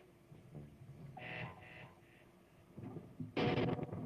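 Electric guitars through amplifiers at the start of a metal song: a few faint scattered notes, then a short louder burst of distorted guitar about three and a half seconds in.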